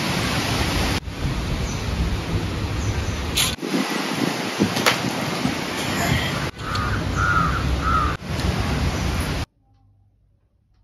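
Steady outdoor background hiss broken by a few abrupt cuts, with a bird calling three times about seven seconds in; the sound stops suddenly near the end.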